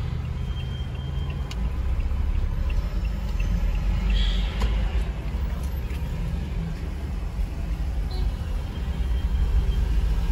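Car cabin noise while driving: a steady low rumble of engine and road noise, with a few faint clicks.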